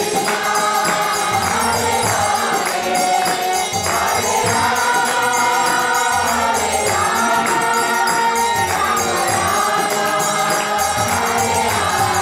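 Devotional chanting sung by a group of voices, with a pair of small brass hand cymbals (karatalas) keeping a steady beat.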